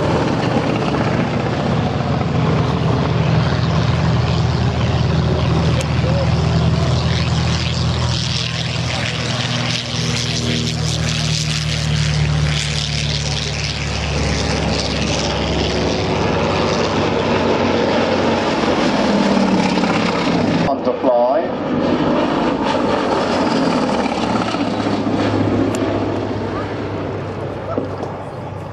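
Gloster Gladiator biplane's Bristol Mercury nine-cylinder radial engine and propeller flying overhead during aerobatics, a deep pulsing drone that shifts in pitch and strength as the aircraft manoeuvres. The sound breaks off briefly about two-thirds of the way through, then fades as the aircraft draws away near the end.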